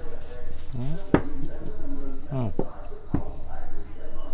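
Crickets chirring steadily at a high pitch behind brief, indistinct voices, with two sharp clicks about a second and three seconds in.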